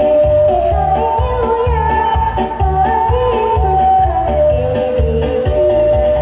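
A young girl singing a melody into a microphone over amplified backing music with a steady beat.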